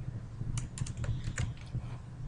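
A few scattered key presses on a computer keyboard over a steady low hum, as a block of code is pasted into an HTML file.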